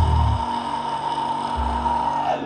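End of a heavy metal song: the full band cuts off about half a second in, leaving a guitar ringing out on one steady high tone, with a single low bass hit near the end.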